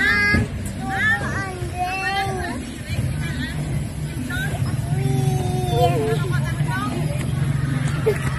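Children's high-pitched voices, short calls and squeals rising and falling in pitch, over a steady low rumble that grows louder about three seconds in.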